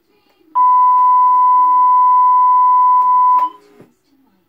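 A steady, loud electronic beep tone on the tape's audio track, one unchanging pitch, starts about half a second in, holds for about three seconds and cuts off sharply.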